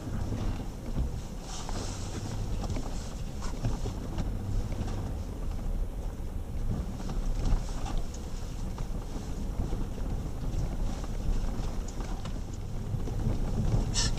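Jeep WK2 Grand Cherokee driving along a rough dirt trail, heard from inside the cabin: a steady low engine and drivetrain rumble with scattered short knocks and rattles as the vehicle rides over bumps.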